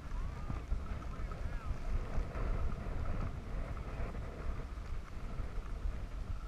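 Wind buffeting a worn camera's microphone as a skier glides down a groomed slope, with skis hissing over the snow. Faint voices carry in from around the run early on.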